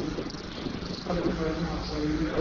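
A person's voice, brief untranscribed speech in a meeting room about a second in, over a steady low room hum.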